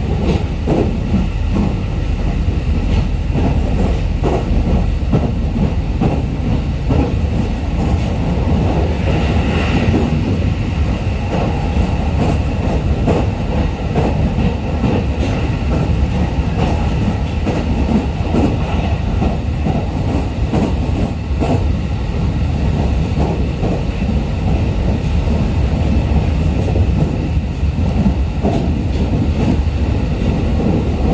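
Running sound inside a JR East E501-series electric multiple unit at speed: a steady rumble of wheels on rail, with frequent short clacks.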